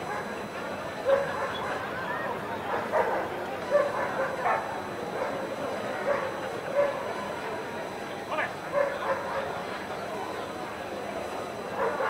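A dog barking and yipping in short, irregular bursts, over a background murmur of voices.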